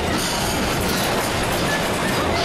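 Building interior rattling and rumbling as it shakes in a strong earthquake: a steady, dense clatter of fixtures and furniture.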